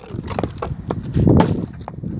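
A partly filled plastic water bottle knocking and thudding against a wooden step as it is flipped and handled, with several sharp knocks and the loudest thud about one and a half seconds in.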